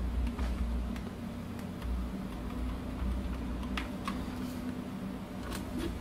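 A few faint, scattered computer keyboard clicks over a steady low hum.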